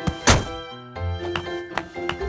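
A cartoon sound effect of a door being shut: one loud thunk about a third of a second in, over soft background music.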